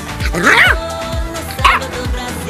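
A puppy yipping twice, a louder yip about half a second in and a short one near the end, over background music with a steady beat.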